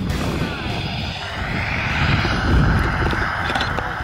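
Steady wind rushing over the camera microphone of a tandem skydiver under an open parachute canopy on final approach, swelling about two and a half seconds in. Faint voices near the end.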